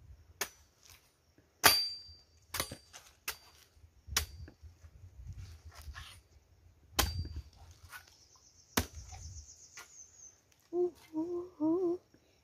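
Machete chopping into the husk of a green coconut: about eight sharp hacks at irregular spacing, the loudest about a second and a half in.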